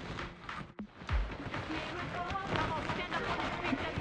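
A faint voice over background music, with the sound dropping out briefly just under a second in.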